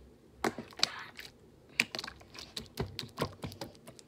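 Fingers poking and clawing into a large mound of glossy pink slime, giving a rapid, irregular run of sharp clicks and pops.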